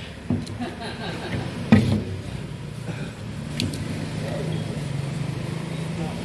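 Knocks as a car engine's valve cover is handled and set down on a corrugated metal sheet, the loudest about two seconds in. A steady low hum runs beneath from about halfway.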